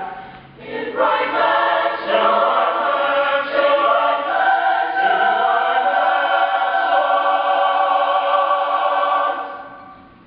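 A cappella choir singing a spiritual in full chords. The voices break off briefly about half a second in and come back in about a second in. Near the end they hold a long sustained chord that fades away.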